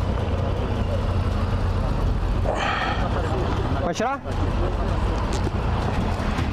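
Steady low rumble of an idling engine and street traffic, with a brief rush of hissing noise about two and a half seconds in.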